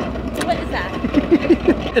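A short run of laughter, about six quick rising notes, over a steady low rumble.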